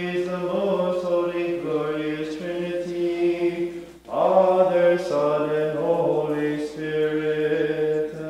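A man chanting unaccompanied in a Maronite liturgy, holding long notes that step from pitch to pitch, with a short break for breath about four seconds in.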